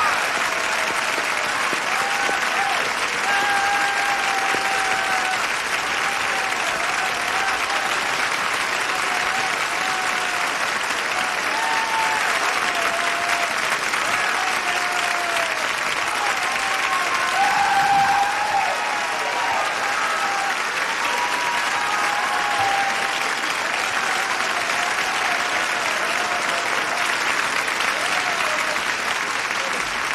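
Studio audience giving a long standing ovation: dense, steady clapping with voices calling out and cheering over it.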